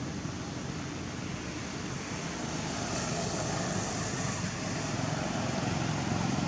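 Steady rushing background noise, even throughout, with no distinct sound standing out.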